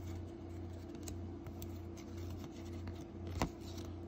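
Baseball cards faintly scraping and sliding against each other as a stack is shuffled by hand, with small clicks and one sharper click about three and a half seconds in, over a steady low hum.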